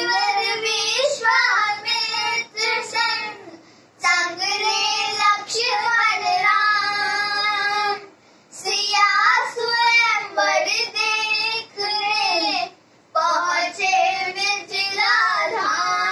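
A girl singing a Hindi devotional Ram bhajan unaccompanied, in four long sung phrases with short breath pauses between them.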